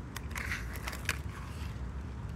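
Plastic Hot Wheels track piece and die-cast toy car being handled on grass: several sharp clicks and a brief rustle in the first second or so.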